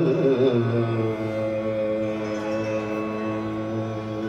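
Hindustani classical vocal music with harmonium accompaniment: a quick, wavering ornamented phrase that settles, about a second in, into a long steady held note.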